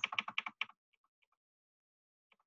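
A quick run of short clicks, like typing on a keyboard, in the first half second or so, then a few faint ticks, then silence.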